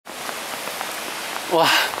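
Steady hiss of heavy falling snow pattering on coats and surroundings, with faint ticks in it. About one and a half seconds in, a voice exclaims "wa" (wow) with a falling pitch.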